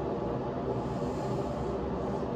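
Steady room noise: a low hum with a hiss underneath and no distinct events.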